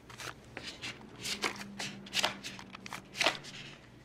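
Paper banknotes being counted by hand: a quick, irregular series of crisp flicks and rustles as the bills are thumbed through.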